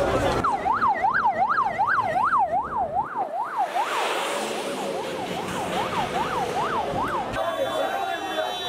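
Emergency vehicle siren on a fast yelp, rising and falling about two to three times a second, with a rush of passing vehicle noise about halfway through. It starts and stops abruptly.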